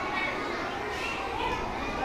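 Indistinct chatter of young children's voices, several talking at once.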